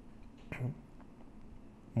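Quiet room tone with one brief, soft vocal noise from a man about half a second in, a short sound from the throat rather than a word.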